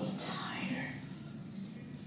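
A faint, indistinct murmuring voice, with a brief swishing rustle just after the start that falls in pitch.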